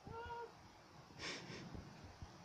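A dog gives one short, high whine in the first half-second, followed about a second later by a brief breathy puff.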